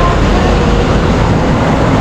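Road traffic passing close below, led by a loaded dump truck's engine going by: a loud, steady low rumble.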